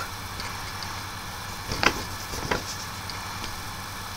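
Quiet room tone: a steady low hum with hiss, and two faint short clicks about two seconds and two and a half seconds in.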